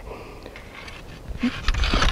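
Steel electrical-conduit frame legs sliding down over rebar stakes, with a cluster of light metallic clicks and scrapes in the last half second.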